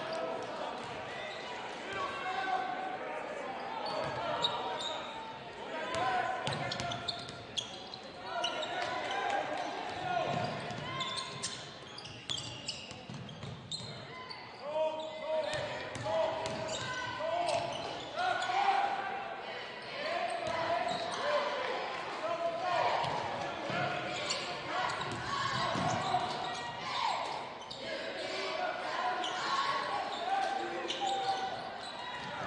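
Basketball dribbling on a hardwood gym floor during live play, with voices calling out across a large gym.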